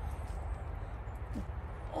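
Steady low outdoor rumble with faint light ticks and rustles as the hanging durian is handled among the leaves, and one short vocal sound about one and a half seconds in.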